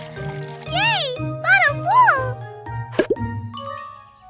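Cartoon babies' voices making three wordless rising-and-falling hums of contentment over light children's background music. A brief sudden sound effect comes about three seconds in.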